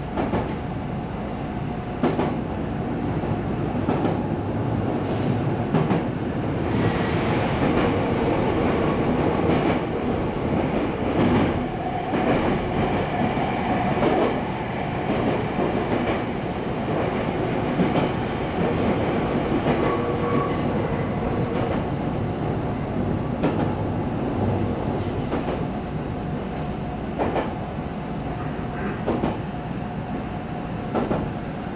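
JR 313 series electric train running, heard from its cab: a steady rolling rumble with wheels clicking over rail joints and some wheel squeal on the curves. The sound grows louder while the train passes through a tunnel, from about a quarter of the way in until past the middle.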